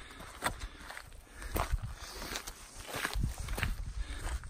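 Footsteps on gravelly, stony ground: about five uneven steps over a low rumble.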